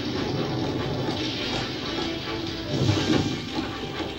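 Cartoon action soundtrack played through a TV's speaker: background music with sound effects under it, swelling louder about three seconds in.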